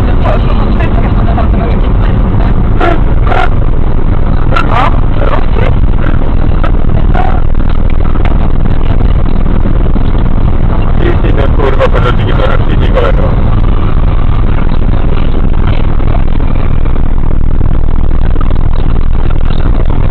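Steady, loud road and engine noise inside a car cruising at motorway speed, about 86 mph, heard through the dashcam. Voices talk on and off over it.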